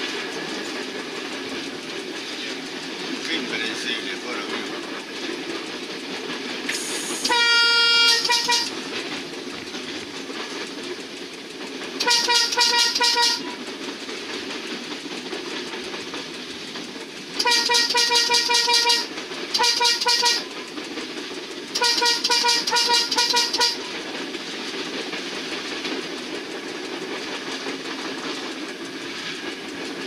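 Horn of a moving passenger train heard from inside the cab, sounded in five blasts, the fourth one short, over the steady running noise of the train on the rails.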